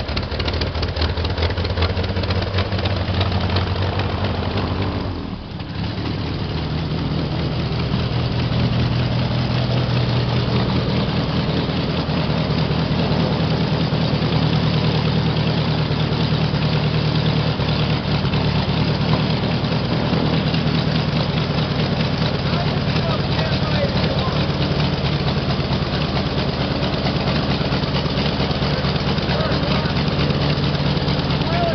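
Polaris air sled's engine and propeller running, loud and steady. It sags briefly about five seconds in, then picks up again and runs on evenly.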